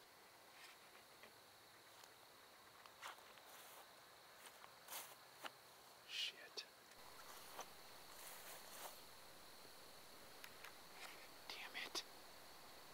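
Near silence: a few faint scattered rustles and small clicks, a little busier near the end, over a faint steady high-pitched tone.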